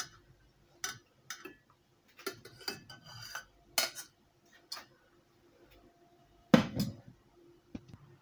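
Stainless-steel saucepan and small mesh strainer clinking and knocking as they are handled: a string of sharp metal clinks over the first few seconds, then the loudest knock about six and a half seconds in as the pan is set down on the glass cooktop.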